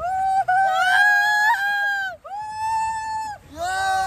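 Young men's long, high-pitched yells of excitement while riding down a water slide: three held cries one after another, the first lasting about two seconds.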